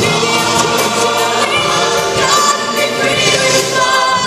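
A large mixed choir singing an upbeat number with accompaniment, loud and continuous.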